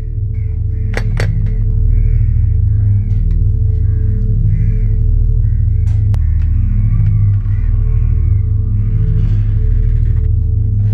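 Suspense background music built on a low, steady drone with a held tone above it. Two sharp knocks come about a second in, and a click near the middle as a metal door bolt is slid.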